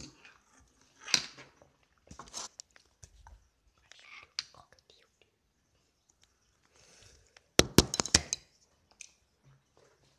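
Close handling noise: scattered rustles and soft whispery sounds, then a quick run of sharp clicks and knocks about three quarters of the way through, the loudest thing here.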